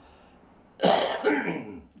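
A person coughing and clearing their throat: one sudden harsh burst about a second in, trailing off into a short voiced rasp.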